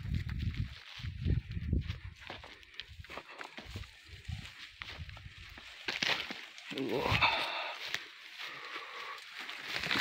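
Oil palm fronds rustling as they are pushed aside, with footsteps in the undergrowth and irregular low thumps in the first few seconds. The rustling is loudest about six to seven seconds in.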